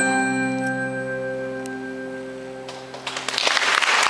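A live band's final chord ringing out and slowly fading, with acoustic guitar to the fore. About three seconds in, audience applause breaks out and quickly grows loud.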